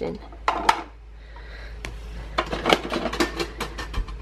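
Hard plastic parts of a Bruder toy garbage truck clicking and clattering as they are handled, with a few sharp clicks early and a quick run of them in the second half.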